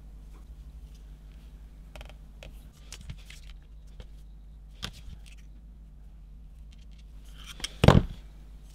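Light scattered clicks and taps of small hand tools and a thin brass brazing rod being bent with long-nose pliers and measured with digital calipers on a paper template, with a louder burst of handling clicks and scrapes near the end. A low steady hum runs underneath.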